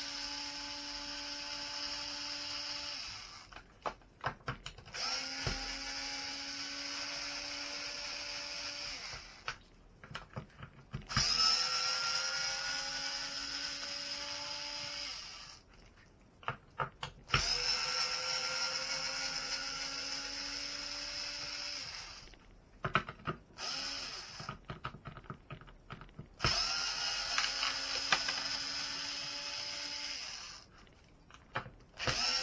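Small cordless electric screwdriver running in bursts of a few seconds each, about five times, backing screws out of a Traxxas X-Maxx RC truck's chassis. Each burst winds up quickly to a steady whine, and between bursts there are clicks and taps of handling.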